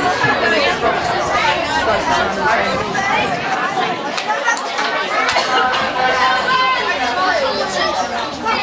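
Several people chatting at once close to the microphone, overlapping voices with no single speaker standing out.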